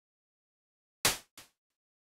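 Electronic clap synthesized from the white noise generator in Native Instruments Massive, played once: a bright noise burst about a second in, then a fainter second hit a few tenths of a second later. Its multi-peak attack is spread out because the modulation is running way too slow.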